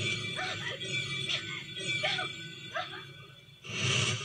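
Film soundtrack played from a television: a run of short rising sounds, about five of them roughly two-thirds of a second apart, over faint background, then a louder burst of music starting just before the end.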